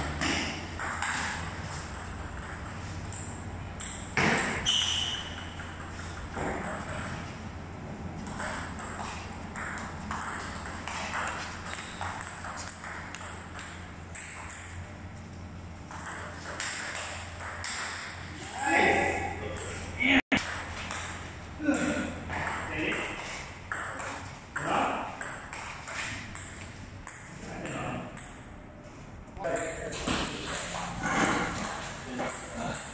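Table tennis ball clicking back and forth off paddles and the table in a running rally, in a large hall.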